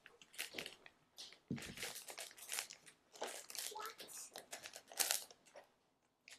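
Crinkling and rustling of kit packaging and small craft-kit pieces being handled, in short irregular bursts.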